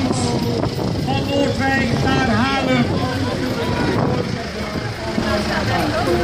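Tractor engine running steadily at low revs as it pulls a parade float, with people's voices talking over it.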